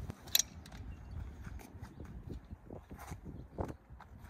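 Clicks and knocks of a folding steel-framed camp table being handled and opened out, with one sharp click about a third of a second in and lighter scattered knocks after it.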